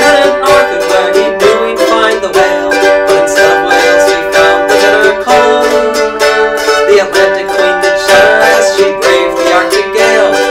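Mandolin played in a folk ballad, picked quickly and evenly, with sustained ringing notes.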